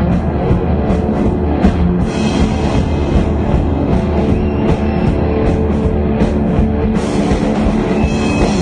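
Live rock band playing an instrumental passage: electric guitar, bass and drum kit with a steady drum beat and cymbal hits.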